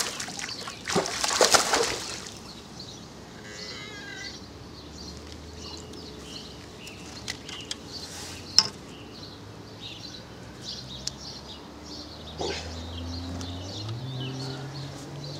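A hooked zander thrashing and splashing at the water surface as it is grabbed by hand, loudest about a second in. This is followed by scattered small clicks and knocks as the fish is handled in the landing net.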